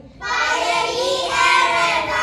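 A group of young children singing together, starting suddenly just after the start and going on loudly.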